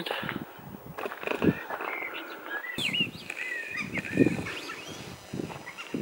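Small birds chirping and whistling, with rising and falling calls clustered about three seconds in, over the low thumps and rustle of someone walking.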